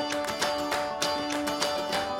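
Background music: an instrumental piece of plucked strings, notes picked in a steady pulse over held tones.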